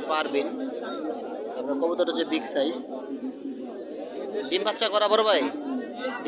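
People talking over one another, market chatter, with one voice louder near the end.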